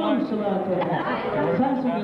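Crowd chatter: several people talking at once in a large, busy room, with no single voice standing out.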